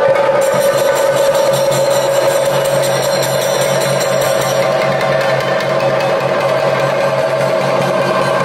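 Chenda drums of a Kerala temple ensemble (chenda melam) beaten with sticks in a dense, continuous roll, with a steady high ringing tone held over the drumming.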